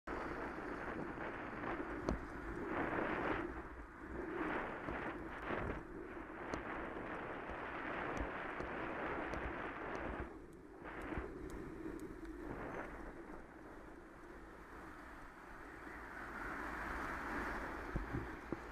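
Wind rushing over the microphone of a camera on a moving bicycle, mixed with road and traffic noise, rising and falling in gusts; a few faint clicks.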